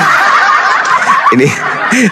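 A person laughing in a high, thin snicker for about the first second and a half, after which a voice starts speaking.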